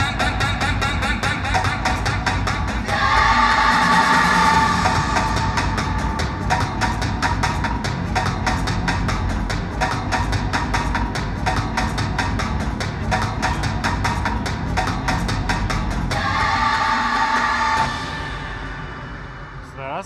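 Music with a fast, steady beat and brighter sustained passages, fading down over the last couple of seconds.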